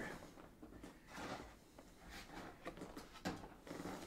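Faint rustling and a few soft knocks of objects being handled and moved, with small clicks about two and three seconds in.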